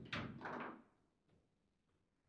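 Table football (foosball) play: two sharp knocks about half a second apart as the ball and rod figures strike, each ringing briefly, then quiet.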